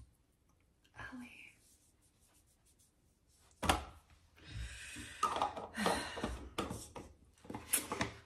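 Mostly quiet room, with one sharp knock a little past three and a half seconds, then a woman's low, breathy talking toward the end.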